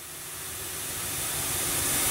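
A swell of hissing noise that grows steadily louder, a transition sound effect building up.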